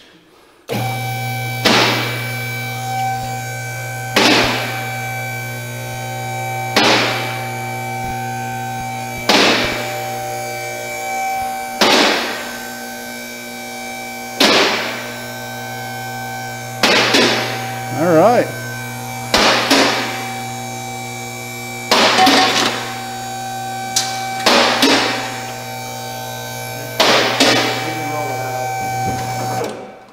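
Two-post vehicle lift's electric hydraulic power unit running steadily, with a sharp click about every two and a half seconds as the lift's safety locks ratchet past each notch while it raises a Jeep body off its frame. The motor starts about a second in and cuts off just before the end.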